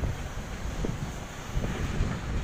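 Wind buffeting the microphone: an uneven low rumble throughout, with a couple of faint short knocks in the background.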